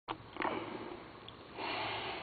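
A man breathing close to a microphone: a click at the very start, a sniff, then a soft intake of breath near the end.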